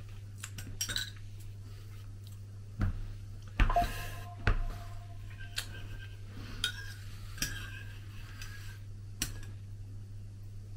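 Metal spoons clinking and scraping against ceramic soup mugs as two people stir and spoon up soup. The clinks come irregularly, with the loudest cluster about halfway through.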